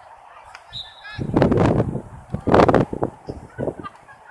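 Two loud shouts from spectators close by, about a second in and again about two and a half seconds in, with fainter high calls from the field just before them.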